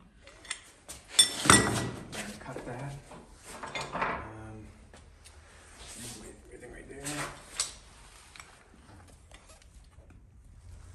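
Metal clinks and clanks of a steering rack and parts being handled on a concrete floor, loudest about a second and a half in, with more clinks around seven seconds.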